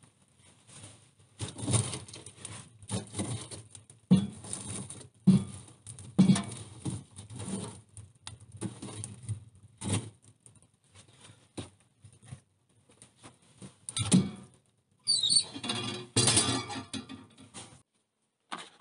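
A small wood-burning stove being tended by hand: irregular knocks, scrapes and clatter of firewood and the stove's metal parts, with a brief squeak and a denser run of rattling near the end.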